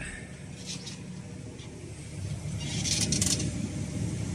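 New Holland T7040 tractor running, heard from inside the cab as a steady low drone that grows a little louder after about two seconds, with a few light rattles about three seconds in.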